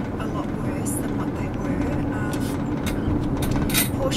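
Steady road and engine noise of a Honda car heard from inside the cabin while driving, a low continuous rumble.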